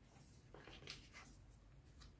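Faint rustling and sliding of tarot cards being moved and laid down on a cloth-covered table, a few soft scrapes in an otherwise near-silent room.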